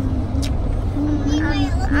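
Steady low rumble and drone inside a moving car's cabin, with a single click about half a second in. A voice starts speaking near the end.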